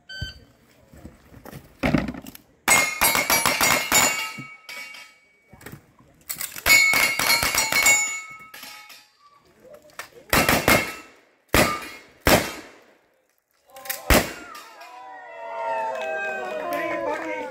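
Gunshots from two shooters firing on steel targets, each hit ringing with a metallic clang: dense rapid runs of shots a few seconds in and again about six seconds in, then a handful of single shots. Voices rise near the end.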